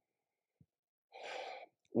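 Mostly quiet, then a little over a second in, a man takes one short audible breath lasting about half a second.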